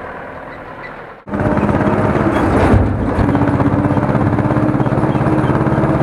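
An Ursus C-330 tractor's two-cylinder diesel running loud and steady at full throttle, heard close from the driving seat, with a rapid, even firing beat. It comes in abruptly about a second in, after a quieter engine sound.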